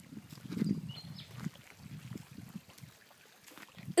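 Footsteps scuffing over dry dirt and fallen leaves, with the rustle of a hand-held phone, uneven and low. A faint, brief high chirp sounds about a second in.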